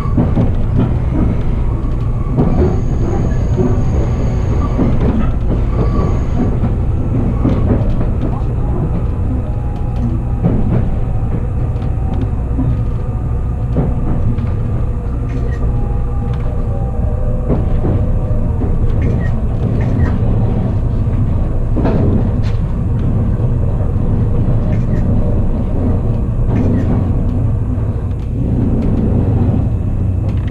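Steady low rumble of the Resort Shirakami (Aoike set) hybrid railcar running along the line, heard inside the passenger cabin, with indistinct voices over it.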